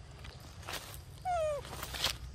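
A single short, meow-like call from a macaque, falling in pitch, a little past the middle.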